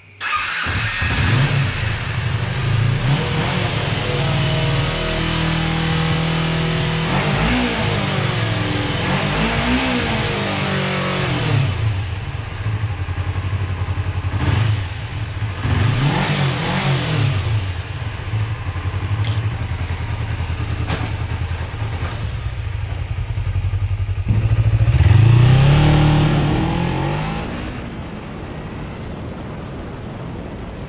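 Kawasaki Ninja 250's parallel-twin engine starting on its freshly rebuilt and cleaned carburetors, then idling steadily with four quick throttle blips, the last and loudest one near the end.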